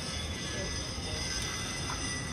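Steady outdoor background noise: a low rumble with a few faint steady high tones and no distinct event.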